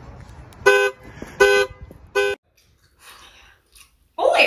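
An SUV's car horn sounding three short, evenly spaced honks, each a steady two-tone blare.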